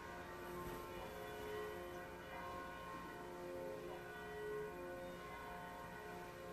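Church bells ringing faintly, overlapping held tones at several pitches sounding one after another.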